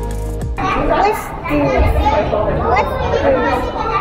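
Background music that cuts off about half a second in, followed by young children's voices and chatter.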